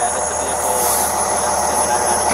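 Steady engine noise, a continuous low rumble with some hiss.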